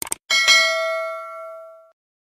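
Subscribe-animation sound effect: two quick clicks, then a bright notification-bell ding that rings on and fades away over about a second and a half.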